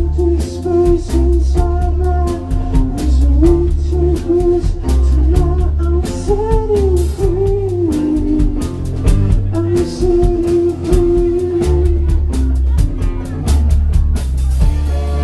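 A rock band playing live on electric guitars, bass guitar and drum kit: a pulsing bass line and steady drum hits under a held melody line that bends up and down in pitch.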